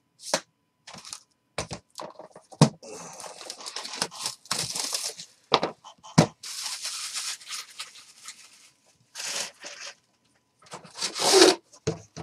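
Cardboard and metal handling noise as a white cardboard outer box is slid off a Panini Flawless aluminium card briefcase: scraping and rustling with several sharp knocks.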